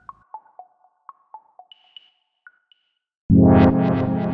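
Electronic music starting: a sparse run of short synthesizer pings at a few different pitches, then a loud sustained synth chord that comes in sharply about three seconds in and slowly fades.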